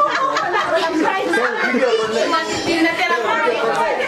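Group chatter: several people talking over one another in a room.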